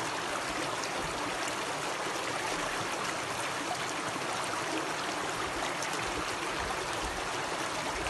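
Shallow stream water running steadily over rocks, heard close up.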